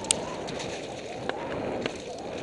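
Wind rushing over the camera microphone and a mountain bike rattling as it rides down a rough trail, with a few sharp knocks from the bike.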